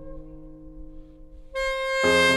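Instrumental saxophone-and-piano arrangement of a worship song: a soft held chord fades gently, then the saxophone comes in loudly with a new note near the end.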